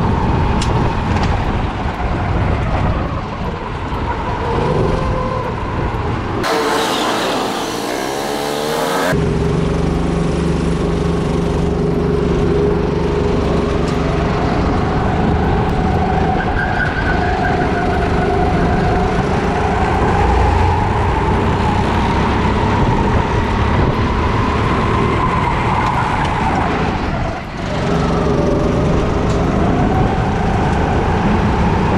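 Rental kart's four-stroke engine heard from onboard while lapping, its note rising and falling with the throttle through the corners, over steady wind noise.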